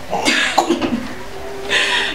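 A woman coughing: a few short coughs, then a harsher one near the end.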